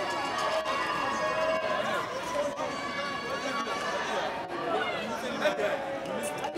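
A crowd of many people talking and calling out at once, a dense, steady hubbub of overlapping voices.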